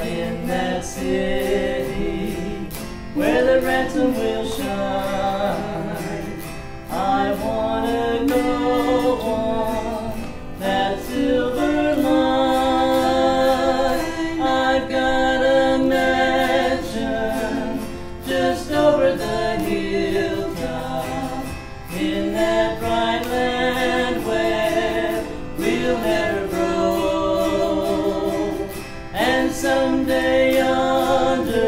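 Two women singing a classic song together, accompanied by a strummed autoharp. The singing comes in phrases a few seconds long, with short breaks between them.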